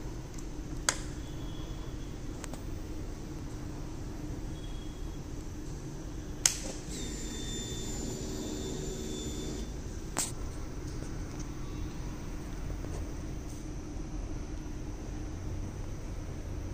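Three sharp clicks several seconds apart from the ignition key and switchgear of a Suzuki B-King with its engine off, and a faint whir of about three seconds right after the second click, over a steady low hum.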